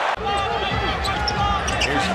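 Basketball game sound from a TV broadcast: arena crowd noise and voices over a steady low rumble of the hall, with short high squeaks and knocks from play on the court. The sound changes abruptly a moment in, where the footage cuts to another clip.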